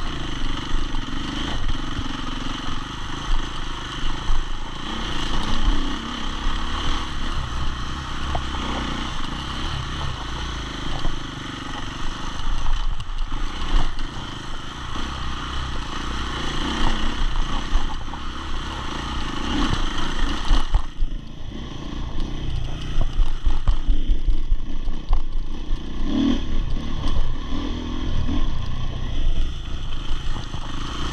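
KTM enduro motorcycle engine running under changing throttle as the bike is ridden along a dirt trail, the revs rising and falling throughout. The higher hiss drops away about two-thirds of the way through.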